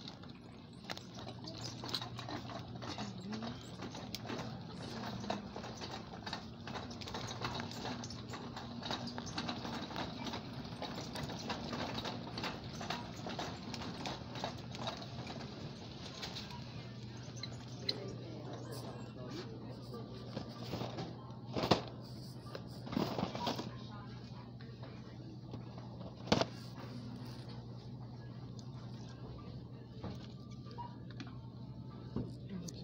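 Grocery store ambience: a steady low hum under frequent small clicks and rattles of a shopping cart being pushed, busiest in the first half. A few sharp knocks come about two-thirds of the way in.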